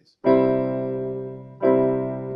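Electronic keyboard, on a piano voice, playing a chord of several notes held together in the key of C. It is struck twice, first about a quarter second in and again about a second and a half in, each time dying away slowly.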